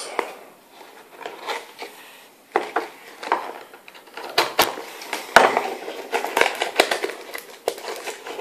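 A small cardboard trading-card pack being snipped open with a small cutting tool and pulled apart: crinkling and scraping that starts about two and a half seconds in, then a run of sharp clicks.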